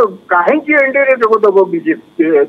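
Speech only: a voice talking over a telephone line, thin and cut off at the top.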